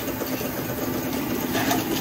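Two-cylinder model steam engine running steadily, belt-driving a small DC dynamo, heard as a continuous, even mechanical running noise.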